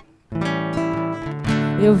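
Classical nylon-string guitar strummed, its chords ringing, after a brief break right at the start. A woman's singing voice comes in at the very end.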